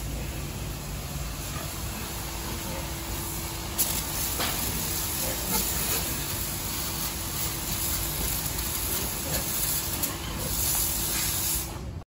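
Water spraying from a hose into a pig pen: a steady hiss, with a faint steady hum underneath and one sharp knock about four seconds in.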